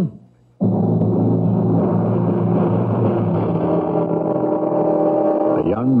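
Dramatic music sting closing a radio-drama scene: a sudden loud chord comes in about half a second in and is held, with a man's voice starting over it near the end.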